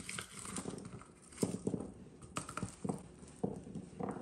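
Garlic being worked in a rubber tube garlic peeler on a countertop: a faint crackle of papery skins, then a few soft, separate knocks as the peeled cloves come out onto the counter.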